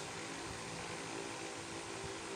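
Steady background hum and hiss, even throughout, with no sharp sounds.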